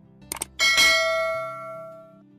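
Animated subscribe-button sound effect: two quick clicks, then a bright bell ding that rings out and fades over about a second and a half.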